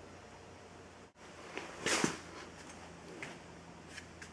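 Battery charger charging a 12-volt lead-acid battery bank, giving a low steady hum, with a short rustle of handling noise about two seconds in.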